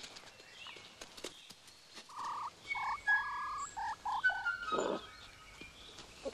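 A fox giving a series of short, high whining calls, some rising in pitch, with thin bird chirps above them.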